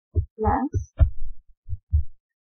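A run of short, low, dull thumps, irregularly spaced at about two a second, with one brief muffled sound about half a second in.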